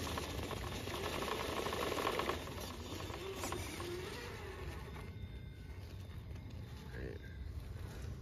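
Castle Copperhead10 brushless motor of an RC rock crawler whining up and down in pitch with the throttle as the truck works up wet, muddy rock, with drivetrain and tire scrabbling noise; the tires are losing grip in the mud. The motor eases off about halfway through.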